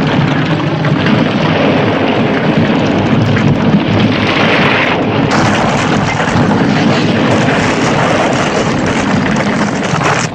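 Film soundtrack of a western chase through a collapsing canyon: a loud, continuous rumble of falling rock and galloping horses.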